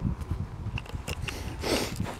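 Wind rumbling on the microphone, with a few small clicks around the middle and a short rush of noise near the end.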